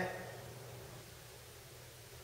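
Quiet room tone in a lecture room with a faint steady low hum, after the tail of a man's voice fades out in the first half second.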